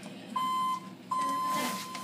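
Elevator car operating panel beeping as its door-open and door-hold buttons are pressed: a short steady beep, then a longer one at the same pitch starting about a second in.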